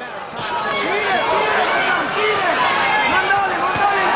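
Boxing arena crowd: many voices shouting and talking over one another at a steady, loud level.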